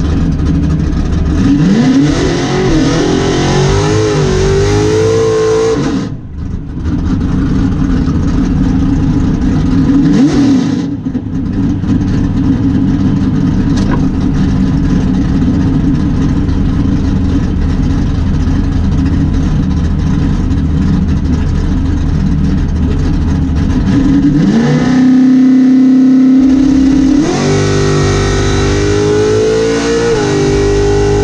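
Drag-racing car's engine heard loud from inside the cabin. Its revs rise and fall several times in the first few seconds and then settle to a steadier running stretch. Near the end the revs rise, are held steady for a couple of seconds, then climb again.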